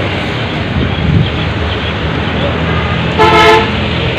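Steady outdoor traffic noise, with a vehicle horn giving one short honk about three seconds in, the loudest sound.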